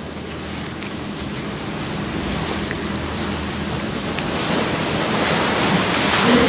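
Steady hiss of background noise with a few faint clicks, growing louder and brighter in the last couple of seconds.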